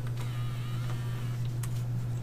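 Faint creaking lasting about a second, with a couple of light clicks, over a steady low hum.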